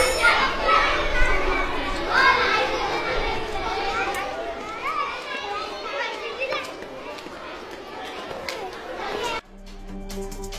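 Many children's voices chattering and calling out at once, fading gradually. They cut off abruptly near the end, when a few steady musical tones begin.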